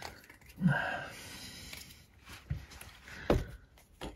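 A few sharp knocks and some handling noise as a hand reaches in around a motorcycle's front brake caliper and disc, with a short murmur about two-thirds of a second in. The second knock, near the end, is the loudest.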